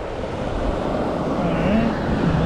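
Wind rumbling and buffeting on the microphone, a steady rushing noise, with a voice heard briefly near the end.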